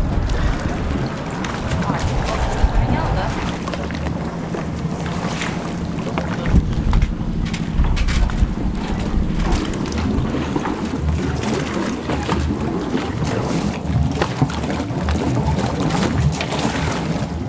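Outdoor yacht-harbour ambience dominated by gusty wind buffeting the microphone, with scattered small knocks and clinks. A steady low hum runs through the middle, from about three and a half to nine and a half seconds in.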